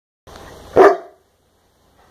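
Bullmastiff giving a single short, loud bark less than a second in.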